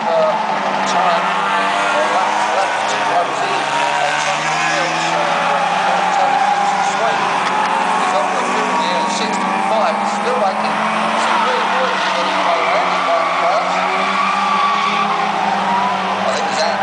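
A pack of Euro Rod oval racing cars lapping the track, several engines overlapping, their pitch rising and falling as they accelerate and lift through the turns.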